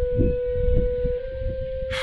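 Background film score: a single sustained wind-like note held steady over a low pulsing beat.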